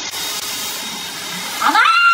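Handheld hair dryer blowing with a steady hiss. About a second and a half in, a man's voice cuts in with a loud, long drawn-out cry.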